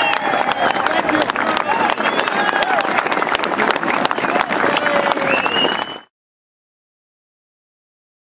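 Crowd applauding and cheering: dense clapping with shouts and whoops over it. The sound cuts off suddenly about six seconds in.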